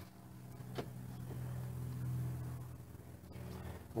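A jacked-up camper trailer wheel rocked side to side by hand, checking the wheel bearings for play, with faint handling sounds and one light click a little under a second in, over a steady low hum.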